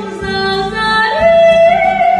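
A woman singing live into a microphone over instrumental accompaniment, holding one note and then rising to a higher, louder held note about a second in.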